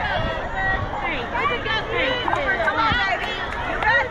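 Many overlapping voices, much of it high-pitched like children, chattering and calling out at once with no single clear speaker.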